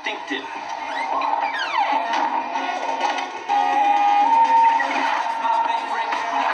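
Film soundtrack playing from a television: music with voices over it. A pitch slides downward just before two seconds in, and about halfway through the music gets louder, with held notes.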